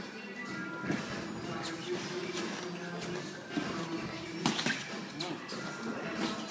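Boxing gloves slapping on gloves and headgear during sparring: several sharp smacks, the loudest a little past halfway, over background music and voices in the gym.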